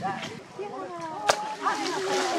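Voices chattering in the background, with one sharp slap about a second in as a macaque hits the pool's water.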